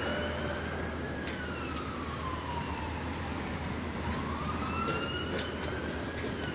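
Emergency vehicle siren in a slow wail, its pitch rising and falling about once every four to five seconds, over steady traffic noise.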